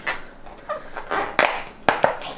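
Cardboard door of a chocolate advent calendar being pushed in and torn open along its perforations by a fingertip: scratchy rustling, then two sharp snaps about half a second apart near the end.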